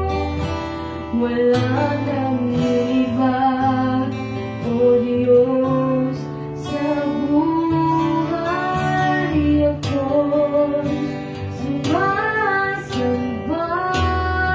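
A woman singing a song with long held notes, accompanied by strummed acoustic guitar.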